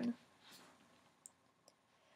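Near quiet room tone after a woman's voice trails off, with two faint short clicks about half a second apart in the middle.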